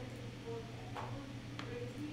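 Two computer mouse clicks, about a second in and again about half a second later, over a steady low hum.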